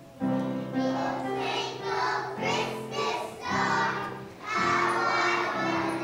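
A group of preschool children singing together as a choir with piano accompaniment, the song starting about a quarter second in.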